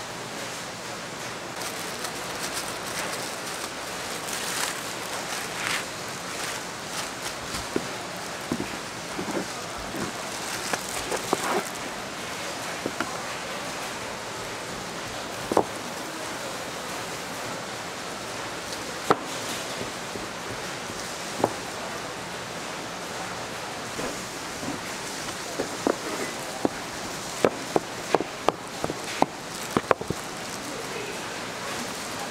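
Steady hiss of market background noise, broken by scattered sharp clicks and taps that come more often near the end.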